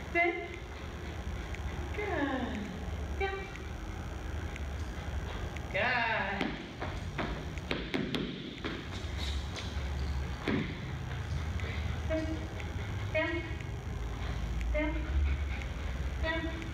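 A woman gives a dog short, quiet spoken commands, with two longer falling calls about two and six seconds in. A few clicks around the middle, and a steady low hum runs underneath.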